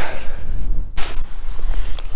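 Wind buffeting the microphone: a loud, steady low rumble with hiss, broken by a sudden jolt about a second in.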